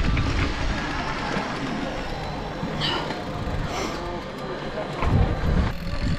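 Mountain bike rolling over a dirt track, with steady tyre and wind noise on a helmet-mounted action camera and a louder low rumble near the end.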